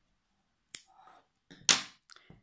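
Handling of plastic knitting needles over a knitted scarf: a light click about three-quarters of a second in, then a louder short scrape near the end, as a needle is set down.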